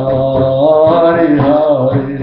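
A man's voice chanting a devotional mantra as one long sung note that bends in pitch about one and a half seconds in, over a steady low drone.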